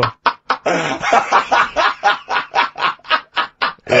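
A man's deep, throaty belly laugh: a long run of quick, breathy gasps of about four to five a second.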